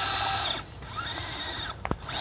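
Traxxas Slash electric RC truck's motor and drivetrain giving a high-pitched whine that cuts off about half a second in. A fainter whine rises again, and there is a sharp click near the end.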